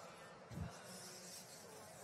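Faint, steady buzzing hum with a soft low thump about half a second in.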